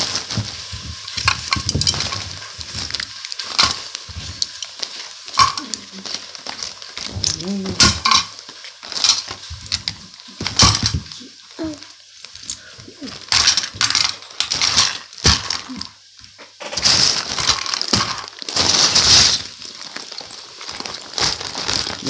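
Plastic action figures and small toy parts being handled and knocked against a tabletop, giving irregular clacks and clicks, with a few hissing bursts near the end.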